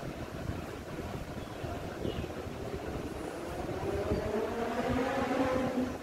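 A low rumble with a motor's hum that rises in pitch over the last three seconds.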